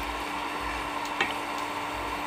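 Steady faint hiss with a low hum under it, and a single light click about a second in.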